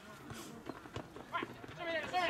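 Players' brief shouts on a football pitch, with a few short thuds of feet and ball on artificial turf as the ball is dribbled.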